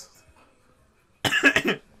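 Near silence, then about a second in a short burst of coughing, several quick coughs in a row.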